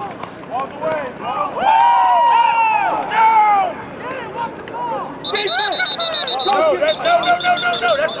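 Men shouting from the sideline, then a referee's pea whistle blowing two long trilling blasts from about five seconds in, signalling the play dead after the tackle.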